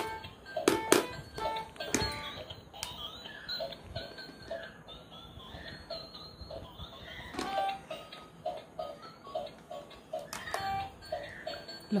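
A battery-powered light-up musical toy playing a tinny electronic tune of short, evenly spaced notes, with a few sharp clicks and knocks as it is handled near the start and again late on.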